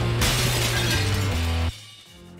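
TV news programme title sting: dramatic music over a steady deep bass tone, with a shattering crash sound effect just after the start. It cuts off suddenly near the end, leaving only faint music.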